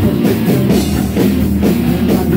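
Rock band playing live: electric guitars, bass guitar and drum kit together on a steady beat.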